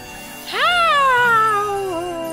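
Cartoon baby dinosaur's high, drawn-out cry: it starts about half a second in, rises quickly, then slides slowly down in pitch for about a second and a half. Soft background music plays underneath.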